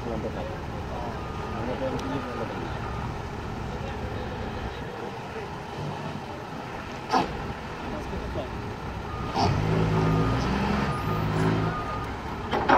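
Forklift engines running, with a sharp clank about seven seconds in and an engine revving harder for the last few seconds as a load is handled.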